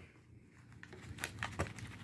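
Foil snack pouch crinkling as it is shaken out over a ceramic plate, with light irregular ticks and clicks starting about half a second in.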